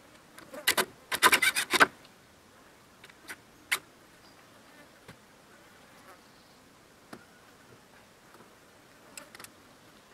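Hands-on work on a wooden solar panel rack: a quick rattling run of sharp knocks in the first two seconds, then a few single clicks and taps spread out.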